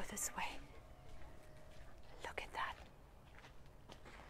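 Two short, faint whispered or murmured phrases of speech, one right at the start and one about two seconds in, over quiet open-air background.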